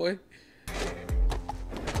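A moment of near silence, then from about two-thirds of a second in, an anime episode's soundtrack: music over a low rumble with several deep thuds.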